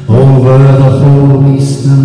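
A man's singing voice comes in loudly right at the start and holds a long sung note over acoustic guitar, with the reverberation of a large church.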